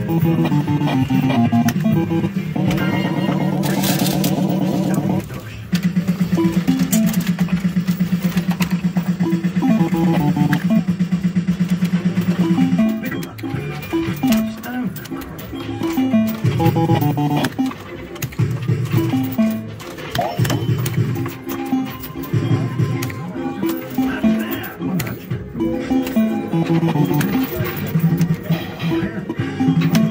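Retro reel fruit machine playing its electronic jingles and bleeps as the reels spin and nudges come up. The sound runs in stepping tune phrases, with a long, rapidly pulsing buzz tone from about five to thirteen seconds in.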